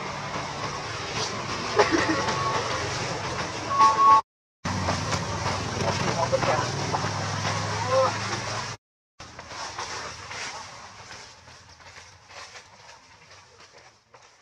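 Outdoor background of people's voices and a steady engine hum, broken twice by sudden dead gaps. The last few seconds are quieter, with scattered light clicks and rustles.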